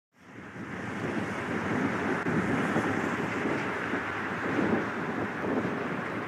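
Steady rush of wind buffeting the microphone, fading in over the first second or so.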